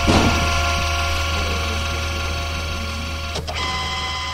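Electronic ambient drone from the soundtrack: a low hum with several held tones above it, a short swell at the start and a brief click about three and a half seconds in, slowly fading.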